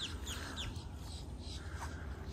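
Faint bird chirps: a few quick, high, descending notes, mostly in the first second, over a low steady rumble.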